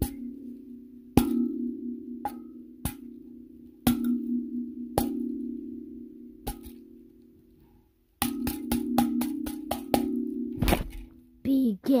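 Kalimba tines plucked one at a time, each low note ringing and slowly fading, then a quick run of about eight plucks.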